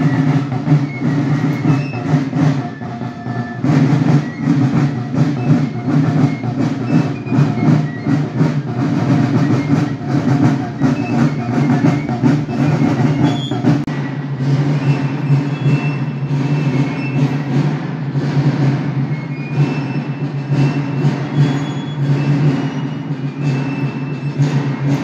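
Marching drums of a folkloric march company playing a fast, continuous rolling beat, with a few short high notes over it.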